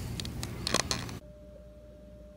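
Outdoor background noise with a couple of brief clicks, then an abrupt cut, a little past halfway, to quiet room tone with a faint steady hum.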